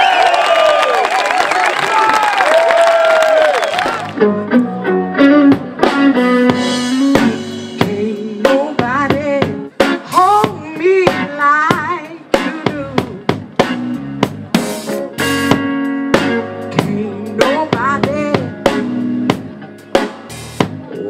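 Audience cheering and clapping over the music for about four seconds, then an abrupt change to a live blues band playing: drum-kit hits with snare and bass drum, bass and guitar, and a woman's voice singing.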